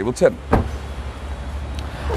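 A car's front door, a 2001 Toyota Corolla's, swung shut with a single thud about half a second in, over a low steady hum.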